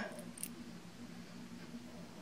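Quiet room tone: a faint steady low hum under a light hiss, with one small tick about half a second in.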